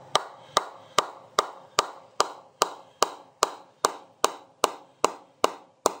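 A bat mallet tapping the face of an Aldred Titan cricket bat in a steady run of even knocks, about two and a half a second. It is a sound test of the pressed willow blade, and the knocks ring nice and deep.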